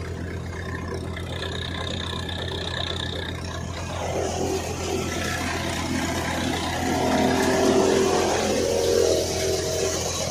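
Soybean thresher running with a steady engine hum. From about four seconds in, the noise of crop being threshed joins the hum and grows louder, and is loudest near the end.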